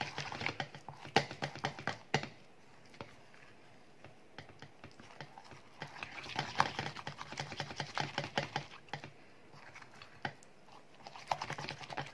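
Wooden spoon stirring a thick, creamy paste in a ceramic bowl: quick runs of clicks and scrapes as the spoon knocks and drags against the bowl, in three spells with quieter pauses between.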